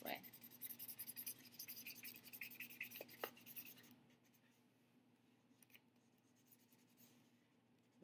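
Felt-tip marker scratching in quick back-and-forth strokes, colouring in a paper plate. The strokes are faint and stop about halfway through.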